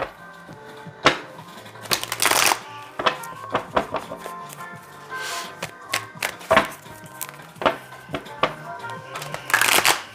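Soft background music, over which a tarot deck is shuffled by hand: quick rustling shuffles about two seconds in, about five seconds in and near the end, with small taps and clicks of cards between.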